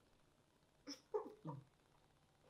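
Three short, quiet, wordless vocal sounds in quick succession about a second in, after a pause.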